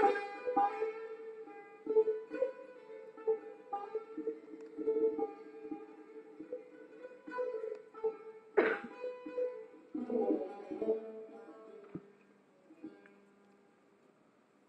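Long-necked Persian plucked lute playing a slow, free melody of single plucked notes that ring and fade. A loud strummed stroke comes at the start and another about two-thirds of the way through, and the playing dies away shortly before the end.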